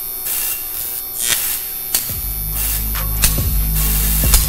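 Intro music: a loud hissing build-up with sharp hits through it, and a heavy bass coming in about two seconds in.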